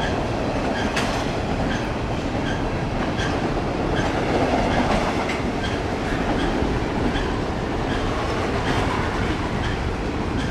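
Double-stack container well cars of a freight train rolling past: a steady rumble of steel wheels on rail, with regular faint clicks a little more often than once a second.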